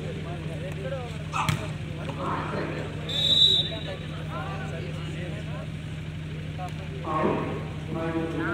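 A referee's whistle blown once, short and shrill, about three seconds in: the loudest sound. About a second and a half before it comes a sharp crack of a volleyball being hit, all over spectator chatter and a steady low hum.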